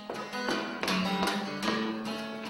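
Steel-string flattop acoustic guitar strummed, about two or three strokes a second, with a bass note ringing under the strums.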